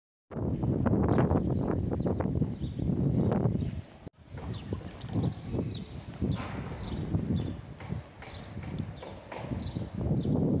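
Outdoor ambience picked up by a phone microphone: a loud low rumble for the first few seconds, then, after a brief dropout about four seconds in, quieter noise with scattered irregular clicks and knocks.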